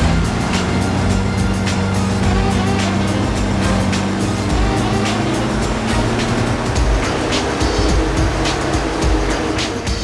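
Mitsubishi Montero's engine running under full load on a chassis dynamometer during a power run, mixed with background music.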